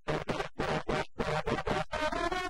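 Rhythmic percussion break in a film dance song: sharp, noisy strokes about five a second.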